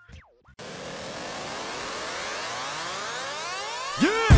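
Electronic riser sweep: a hiss with many tones climbing in pitch together, building slowly louder for about three seconds. It follows a short falling glide and a half-second gap at the start.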